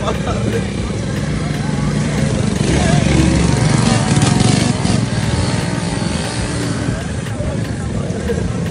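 Several small motorcycle engines running together, growing louder in the middle as the bikes come close.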